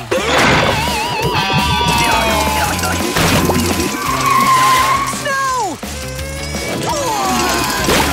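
Cartoon soundtrack: background music with a steady bass line under comic sound effects, a warbling tone about half a second in and a steeply falling whistle-like glide a little past halfway.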